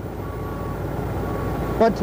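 Steady low rumble of outdoor background noise, slowly growing a little louder, with a faint thin hum above it in places.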